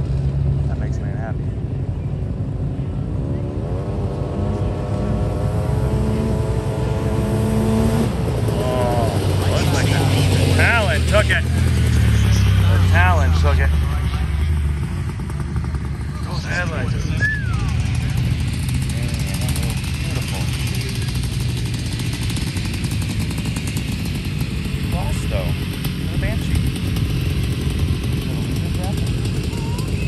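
A race vehicle's engine accelerating hard down a dirt track, its pitch climbing for several seconds and then dropping away as it passes and fades. Voices and shouts from onlookers come over the steady engine noise.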